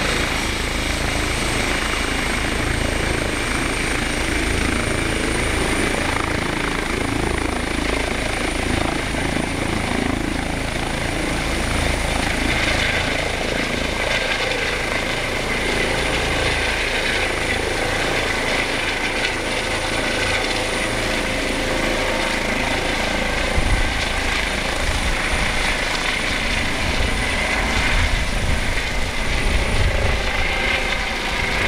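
Airbus EC135 (H135) rescue helicopter lifting off and climbing away: steady turbine and rotor noise, with a high thin whine that rises slightly in pitch over the first few seconds and then holds.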